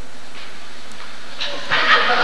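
A steady hiss with no distinct events, nearly as loud as the surrounding speech; a voice starts near the end.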